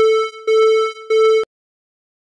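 A steady electronic tone with overtones, passed through a noise gate that chops it into pulses as the gate opens and closes. It dips twice with a slight click and cuts off abruptly about one and a half seconds in.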